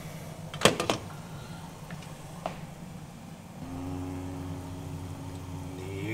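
A glass pot lid clinks a few times in quick succession, just under a second in, over a low steady background hum. A little over halfway through, a steady mechanical drone with a low buzzing tone starts and keeps running.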